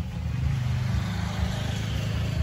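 Motorcycle engine running, growing louder about half a second in and holding steady with a rapid pulsing beat.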